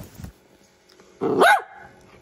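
A small dog gives one short, loud bark about a second in, rising then falling in pitch: barking for attention, as the owner takes it.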